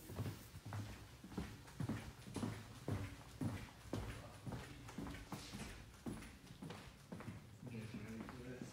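Footsteps on a wooden floor at a steady walking pace, about two steps a second.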